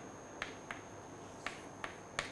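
Chalk writing on a blackboard: four short, faint, sharp taps as the chalk strikes the board.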